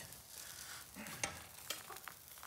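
Lamb cooking on a barbecue grill, sizzling faintly, with a few small crackles and clicks.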